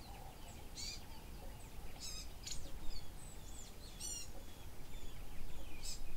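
Birds chirping and calling, with sharp high chirps roughly once a second and small whistled notes between them, over a steady low background rumble.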